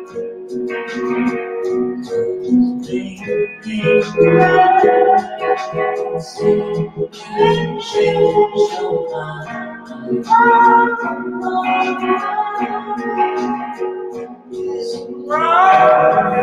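Rock band playing live: electric guitars and keyboard with a sung vocal line coming in a few seconds in.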